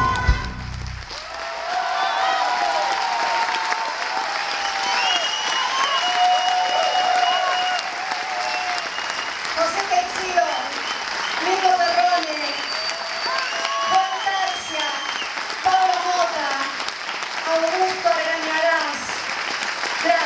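The band's music stops in the first second, then an audience applauds steadily for the rest of the time, with voices calling out over the clapping.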